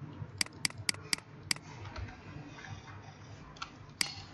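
Five sharp clicks in quick succession over the first second and a half from a computer being operated: mouse buttons or keys pressed while zooming in on the artwork. A fainter click near the end, over faint room noise.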